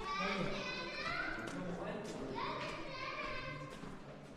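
Children's voices calling and chattering, with high rising calls a few times, echoing in a rock tunnel.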